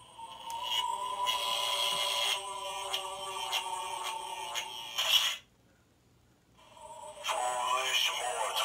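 Tekky animated haunted lamp Halloween prop playing its eerie music soundtrack, held tones sounding for about five seconds. It cuts off suddenly, pauses about a second, then starts again and builds near the end as the lamp's animation begins.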